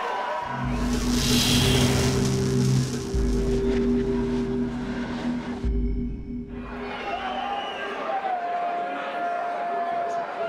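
Cinematic logo stinger: a deep bass swell with sustained low tones and a whoosh near the start, lasting about six seconds. It gives way to quieter hall ambience with faint voices.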